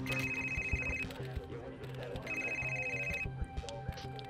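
BlackBerry mobile phone ringing with an incoming call: two high electronic rings, each about a second long, with a pause of just over a second between them.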